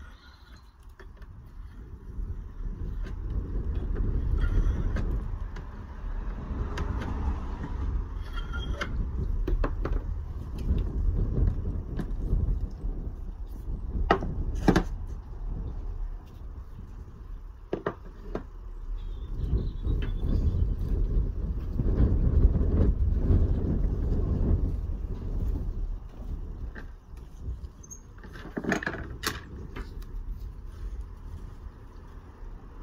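A shave hook scraping the lead seam clean on a flue pipe before welding, with a few sharp knocks as the pipe is handled. Under it runs a low rumble that swells and fades.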